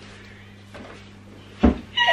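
A single dull thump about one and a half seconds in, over a quiet room with a steady low hum.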